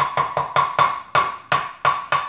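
A metal measuring cup knocked repeatedly against the rim of a glass measuring jug, about four sharp clinks a second, each with a short ringing note, to shake out the sticky corn syrup left clinging inside the cup.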